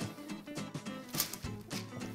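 Background music with held notes and a light beat.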